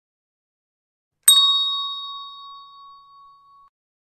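A single bell-like ding, struck sharply about a second in, its high ringing tones fading out over about two and a half seconds.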